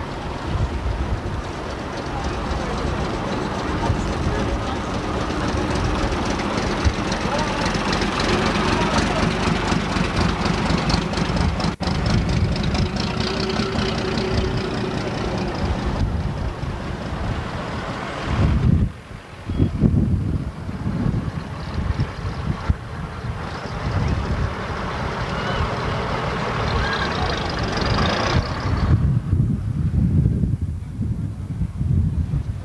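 Diesel coach engine running as the coach moves slowly across grass, with wind buffeting the microphone, heaviest a little past halfway.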